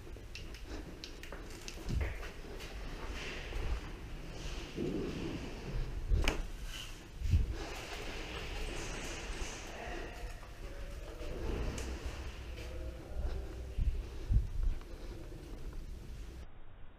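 Movement noise from a player walking through a building in airsoft gear: footsteps and equipment rustling, with scattered low thumps and one sharp click about six seconds in.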